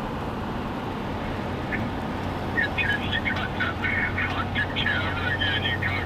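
Steady road and engine noise inside a vehicle cab at highway speed, with a low steady hum. From about two and a half seconds in, a voice talks over it that sounds thin, with no low end.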